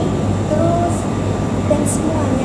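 Steady low hum of supermarket chest freezers, with faint voices over it.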